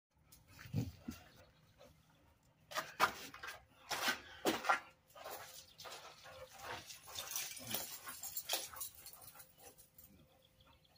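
A pit bull panting hard close to the microphone, a run of quick breathy strokes, with several sharp knocks and rustles in the first five seconds.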